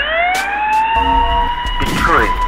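Emergency vehicle siren wailing. Its pitch dips, then rises for about a second and levels off into a steady tone.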